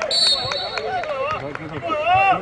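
Footballers shouting to each other on the pitch, with a short high whistle blast just after the start that fades over about a second, and a few sharp knocks.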